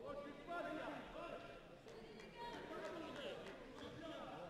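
Several voices calling and talking, fairly faint, as in a crowded sports hall, with a few light knocks in between.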